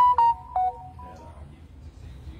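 Electronic chime: a quick melody of about six ringing, bell-like notes that rises and then falls, like a phone ringtone or notification tone. It is over about a second and a half in.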